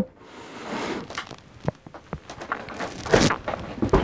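Home-made lever-arm leather clicker press being hauled down by hand: small knocks and creaks from the mechanism, a louder short rush of noise about three seconds in, then a sharp click near the end as the steel rule die cuts through the leather onto the cutting board.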